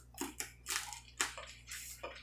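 Close-up eating sounds of Dungeness crab: a quick run of short wet smacks and crunches as the meat is bitten and sucked from the shell, about six in two seconds.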